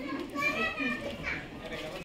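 Background chatter of a small crowd: several voices, some high-pitched, talking at once at a low level with no single clear speaker.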